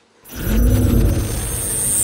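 A loud, deep rumbling whoosh sound effect on a picture transition. It swells in about a quarter second in, with a low tone that rises and then falls and a thin high whine building on top.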